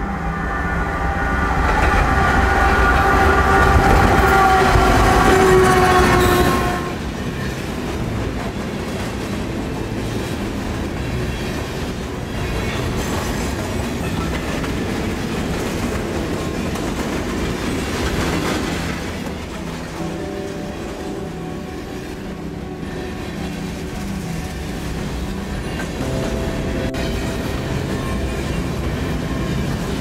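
Canadian Pacific freight locomotive's horn sounding a long multi-note chord as the train approaches and passes, its pitch sagging slightly as it goes by, then cutting off about seven seconds in. After that, the steady rumble and clickety-clack of covered hopper cars rolling past.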